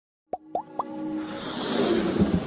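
Animated logo intro sting: three quick rising bloops in the first second, then a steadily building swell leading into electronic music.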